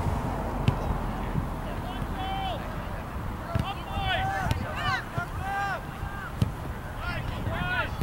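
Several people shouting short, high-pitched calls during a scramble in front of the goal, over steady wind noise on the microphone. A few short thumps are heard between the calls.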